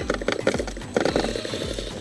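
RGT Rescuer 1:10 RC crawler with its brushed 550 electric motor and drivetrain running, with a rapid irregular clatter of clicks and knocks as it crawls over rock.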